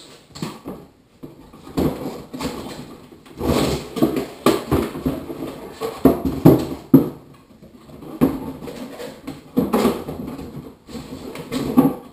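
A cardboard box being pulled open and its packaging handled: an irregular run of scraping, rustling and knocking, loudest in the middle of the stretch.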